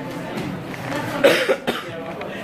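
A person coughing: a couple of short coughs a little past the middle, over a low murmur of the room.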